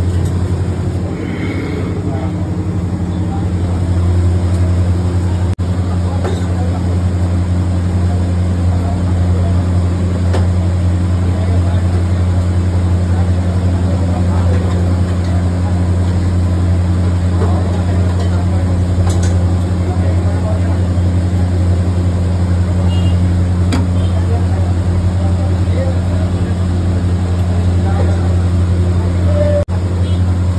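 A loud, steady low machine hum that stays unchanged throughout.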